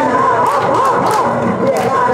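Female vocal trio singing a pop-style song into microphones over recorded backing music, amplified through a PA.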